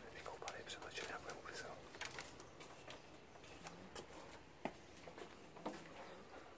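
A man whispering faintly for about two seconds, then a few faint, sharp clicks.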